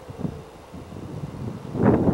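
Wind buffeting the camcorder microphone in irregular rumbling gusts, swelling sharply near the end.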